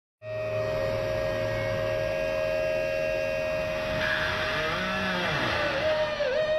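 Electric guitar feedback through amplifier stacks: a sustained, steady whining tone, with a low hum beneath it that stops about two seconds in. From about four seconds in, bent notes swoop up and down in pitch.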